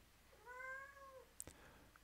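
A house cat meowing faintly once, a single short call of under a second, followed by a faint click.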